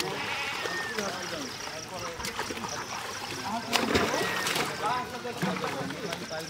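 Water splashing as catla fish thrash in a drawn seine net, with a burst of sharp splashes about four seconds in. Men's voices talk over it.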